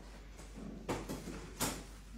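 Two sharp knocks about 0.7 s apart, the second louder: a large framed picture being knocked and bumped as it is lowered towards the floor.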